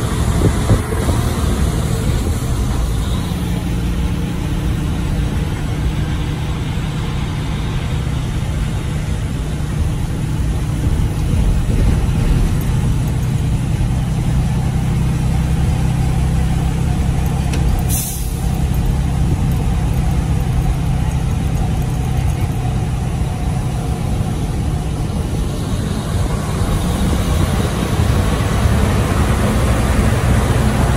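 Freightliner Cascadia semi truck's diesel engine running steadily under load with road noise, heard from inside the cab as it climbs a curving ramp. A single short sharp click sounds a little past halfway.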